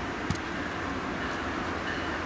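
Steady outdoor rumble and hiss, with two sharp clicks about a third of a second apart right at the start.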